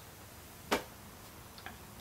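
A single sharp click about three-quarters of a second in, then a couple of faint ticks, over low steady room hiss.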